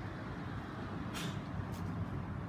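Steady low rumble of nearby street traffic, with a brief hiss a little over a second in and a shorter one near the end.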